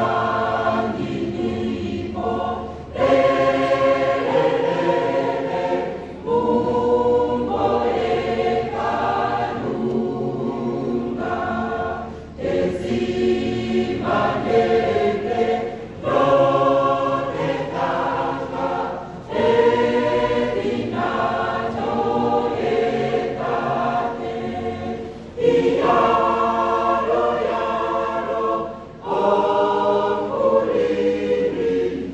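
Mixed-voice choir of women and men singing together in parts, in phrases broken by short breath pauses every few seconds.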